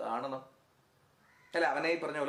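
A man speaking Malayalam, with a pause of about a second in the middle before he goes on talking.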